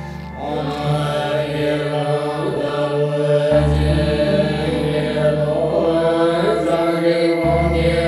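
Tibetan Buddhist prayer chanted by lamas as a steady mantra recitation, set to a music backing. A deep bass tone swells in about every four seconds beneath the voices.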